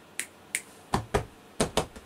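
A cat moving about right beside the camera: a string of light clicks and taps, with a few heavier knocks in the second half.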